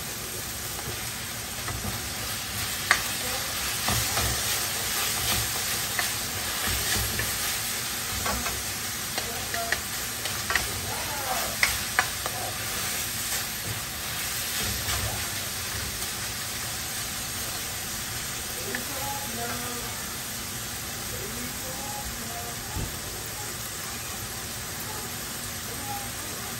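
Chopped meat sizzling in a hot wok while a spatula scrapes and taps against the pan as it is stir-fried. The clicks of the spatula are busiest in the first half and thin out later, leaving mostly the steady sizzle.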